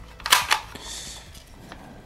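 Shutter of a Polaroid Square Shooter 2 instant camera fired empty with no film loaded: two quick clicks close together, a short way in.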